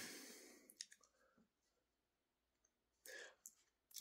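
Near silence in a small room: a man pausing between sentences, with a couple of faint mouth clicks about a second in and a short faint breath near the end.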